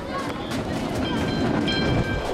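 Tram rolling on its rails, with a steady horn of several tones starting about a second in and growing louder near the end.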